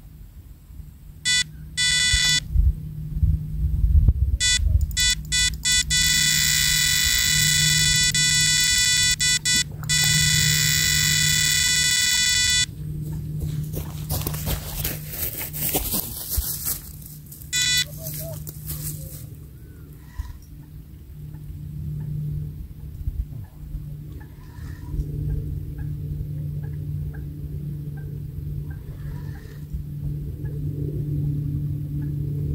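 Electronic carp bite alarm sounding for a run as a fish pulls line from the rod. A few single bleeps turn into a rapid stream that merges into one continuous tone for about six seconds, then cuts off suddenly. Several seconds of rustling and handling noise follow, then one more short bleep.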